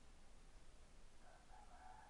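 Near silence: faint room tone, with a faint distant animal call in the second half.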